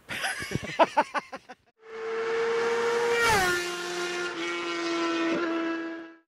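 A motorcycle passing by at speed: a steady engine note that drops sharply in pitch as it goes past, about three seconds in, then holds at the lower pitch until it cuts off at the end.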